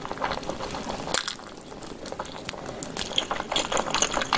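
Close-miked wet eating sounds: a person chewing and sucking the meat off a pig's tail, a run of short wet smacks and clicks, sparser about halfway through.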